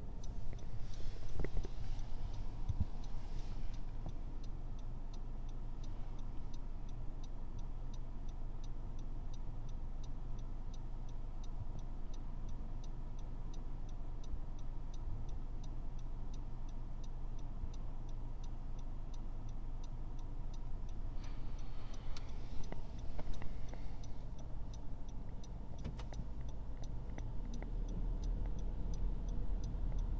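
Honda car's turn-signal indicator ticking at an even rapid pace inside the cabin, over the low hum of the car's engine. There is a brief noisy rustle a little over 20 seconds in, and the low rumble grows near the end.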